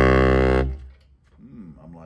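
Yamaha YBS-61 baritone saxophone holding a low note that stops under a second in, followed by a pause with only faint sounds.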